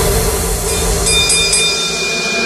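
Vinahouse electronic dance music in a breakdown: a chord of held synth tones over a noisy wash, with the bass thinning out near the end.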